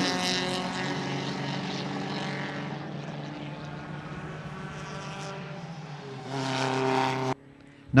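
A Talbot-Lago T120 pre-war sports car's engine running at speed as the car passes and draws away, fading steadily. Near the end another car's engine swells for about a second, then cuts off suddenly.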